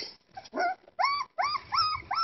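Young puppies whimpering: short high whines that each rise and fall. One faint whine comes about half a second in, then three louder ones in quick succession from about a second in.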